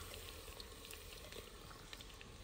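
Sliced onions frying in hot oil in a clay handi pot: a faint, steady sizzle with scattered small crackles.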